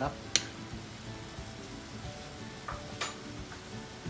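Sauce bubbling and sizzling as it reduces and thickens in a wok on a gas stove, alongside a stockpot at a rolling boil. A sharp tap comes about a third of a second in, and a fainter one about three seconds in.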